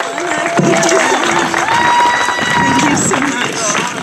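Audience applauding, with several long held whoops from the crowd over the clapping.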